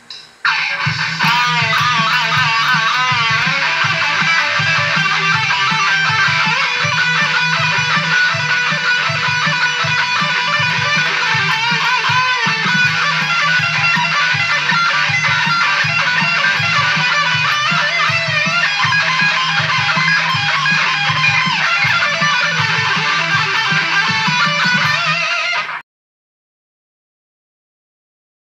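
Heavy electric guitar jam in the key of B: lead lines with bends and vibrato over an evenly pulsing low rhythm. It starts about half a second in and cuts off suddenly near the end.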